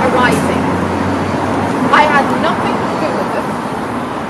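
Steady street traffic noise, with a low vehicle engine hum that fades out a little under two seconds in. Brief snatches of a woman's voice sit over it.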